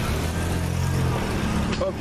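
Steady low rumble of a motor vehicle engine running, with a man's voice starting again near the end.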